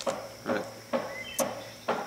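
Outdoor summer ambience: a steady high insect drone, such as crickets or cicadas, with a couple of brief high chirps around the middle.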